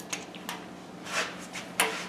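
A few light clicks and taps of metal parts being handled on a lathe threading jig, with a sharper noise near the end.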